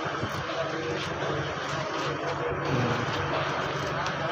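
A vehicle engine running steadily at idle, a low even drone, with indistinct voices over it.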